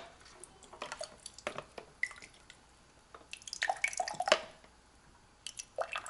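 Water dripping and splashing as a wet carbon block filter cartridge is pulled out of its water-filled plastic filter housing, in scattered short drips and clicks that come thickest from about three and a half to four and a half seconds in. A sharp knock at the very start.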